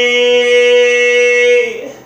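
A man singing a cappella, holding one long steady note that fades out near the end.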